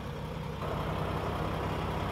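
Diesel truck engine idling, a steady low hum; a higher rushing noise joins it about half a second in and holds.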